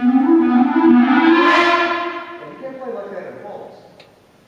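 Concert wind band playing a loud sustained chord that swells to a peak about a second and a half in and then dies away.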